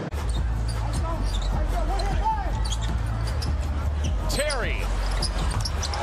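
Basketball court sound: a ball bouncing and sneakers squeaking on hardwood, with short chirps about a second in, around two seconds and again near the end, over a steady low hum.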